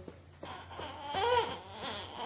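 Baby fussing: a short, whiny, rising-and-falling cry about a second in, after a brief quieter moment.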